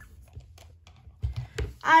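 A ceramic mug full of markers being set down on a desk: a few faint ticks, then a couple of soft knocks and a sharp click near the end.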